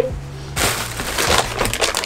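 Plastic packaging crinkling and crackling as hands rummage through plastic air-pillow packing in a delivery box and pull out a plastic food packet, starting about half a second in.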